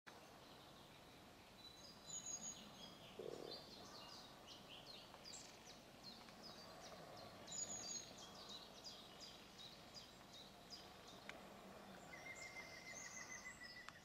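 Faint birdsong over a quiet outdoor background: many short chirping notes, the clearest about two and eight seconds in, and a steady trill near the end.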